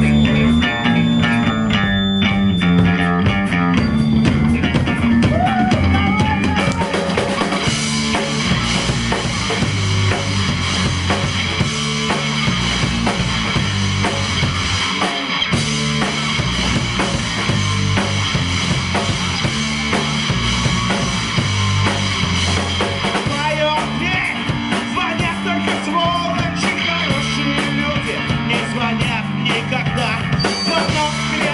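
A live rock band playing loud: electric guitars and bass over a drum kit, the sound growing brighter about eight seconds in.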